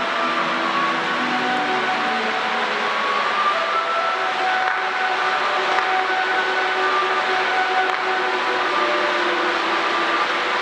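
Steady, loud hiss of ground fountain fireworks (gerbs) burning, with music of held melodic notes playing over it.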